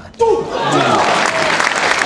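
Spectators applauding and cheering as a table tennis point ends, with a shout as the cheer breaks out. It starts suddenly and cuts off abruptly at the end.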